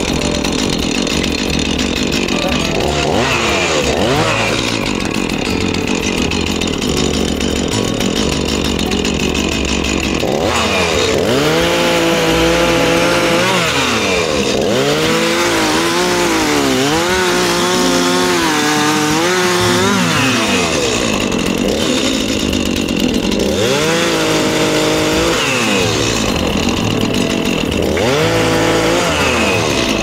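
Two-stroke chainsaw running and cutting dead timber into lengths, its engine revving up and dipping in pitch as the chain bites into the wood. The heaviest cutting runs from about eleven to twenty seconds in, with shorter cuts around twenty-four seconds and near the end, and the saw running steadier between them.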